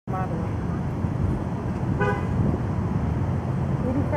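Two short car-horn toots, one at the very start and a shorter one about two seconds in, over a steady low rumble of traffic.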